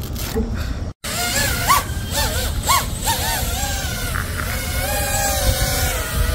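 FPV quadcopter's brushless motors and propellers whining in flight, the pitch sweeping up and down in quick swoops with the throttle, then holding steadier near the end.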